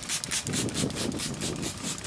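Trigger spray bottle squirting water onto a painted van panel, wetting it for wet sanding, with repeated short spritzes.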